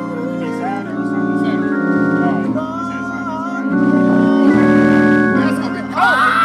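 Organ played in a gospel style: sustained chords held over bass notes that change every second or so.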